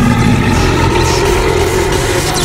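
Loud, steady low rumble with faint steady tones above it: a dramatic sound effect for a serial's demon and magical lightning scene.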